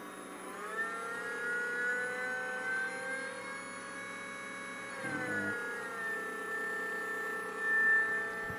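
Brushless outrunner motor spinning under a sensorless brushless ESC, giving a steady electronic whine of several pitched tones. The pitch climbs as it is run up about half a second in, then holds, dropping slightly about five seconds in before settling steady again.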